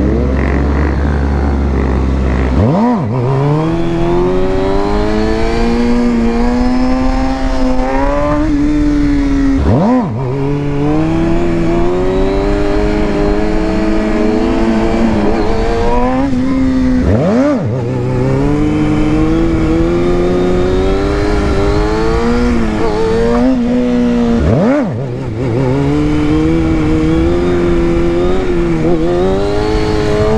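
Sport motorcycle engine revving sharply up from idle four times as the rider pulls into wheelies. Each time it holds at a high, slightly wavering rev for several seconds while the wheelie is balanced on the throttle, then drops away as the front comes down.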